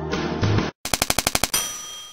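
Background music cuts off, then a fast run of about ten typewriter key strikes, followed by a ringing bell-like ding that fades away.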